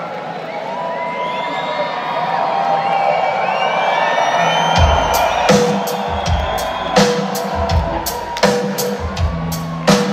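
An arena crowd cheers and whistles, then about halfway through a rock band starts a song with a steady drum kit beat and a low bass line, heard from the audience.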